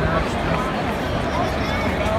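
Ballpark crowd chatter: many spectators' voices overlapping in the stands.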